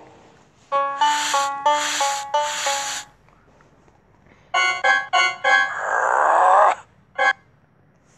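Short musical sound effects from a children's animated story app: four held notes in a rising-and-falling phrase, then a quick run of staccato notes, a falling cartoon-like glide and a single short note near the end.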